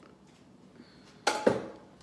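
Two quick knocks of a kitchen utensil on the counter, about a second and a quarter in. A wire whisk is being put down and a wooden spoon picked up.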